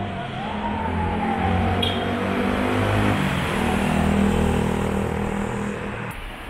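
Street traffic noise: a steady rush of road noise with the low hum of motor vehicles. A whine rises over the first half second, then slowly falls in pitch until about three seconds in.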